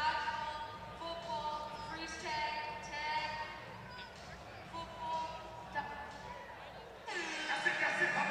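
Speech over an arena public-address system, with music playing under it: a boy answering into a hand microphone, then a man's voice coming in louder near the end.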